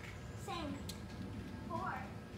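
Girls' voices in short snatches of talk, about half a second in and again near the end, over a steady low background rumble.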